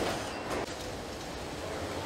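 Car assembly-line ambience: a steady rumble and hiss of factory machinery, with a faint click about half a second in.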